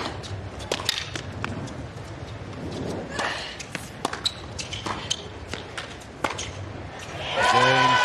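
Tennis rally on a hard court: a serve, then the ball struck back and forth by rackets and bouncing, in sharp pops spaced roughly half a second to a second apart. About seven seconds in, a loud crowd reaction with voices falling in pitch breaks out and turns into applause.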